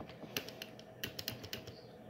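Faint, irregular clicks of typing on a keyboard, about ten keystrokes.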